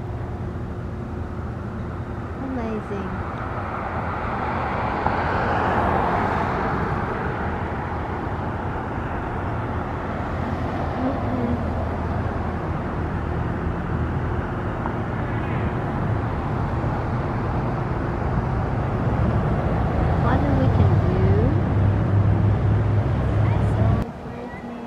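Continuous outdoor background noise: a steady rush with a low rumble underneath, swelling slightly a few seconds in and again near the end.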